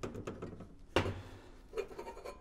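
Metal vernier calipers and a stainless steel tube knocking and clicking against a metal workbench as the caliper jaw is set against the tube to scribe a mark, with a louder knock about a second in.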